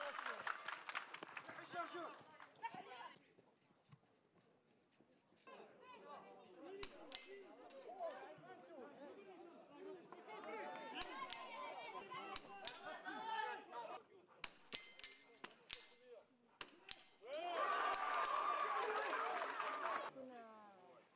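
Rifle shots on a firing range: about a dozen sharp cracks scattered through the middle, some in quick pairs, over people talking.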